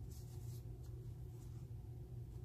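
Soft, faint scratchy swishes of a metal crochet hook pulling cotton yarn through single crochet stitches, heard near the start and again about halfway through, over a steady low hum.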